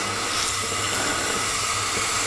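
Tomato-based stew cooking fast in a very thin wok over a gas burner at above-medium heat, making a steady bubbling hiss.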